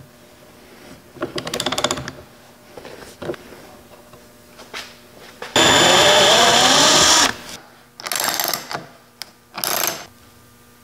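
Electric drill running in short bursts while boring out a hole for a threaded insert. The main run, about five and a half seconds in, lasts under two seconds, and its pitch wavers under load. Shorter whirring bursts with fast clicking come before and after it.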